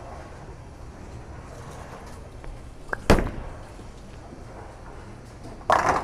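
Storm Phaze AI bowling ball released onto the lane with a single sharp thud about three seconds in, followed by a louder clatter near the end as it reaches the pins.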